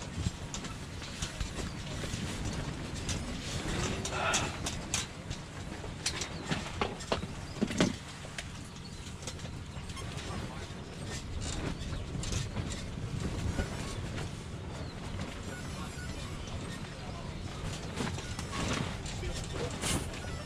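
Steady background noise with faint, distant voices and a few sharp clicks from handling.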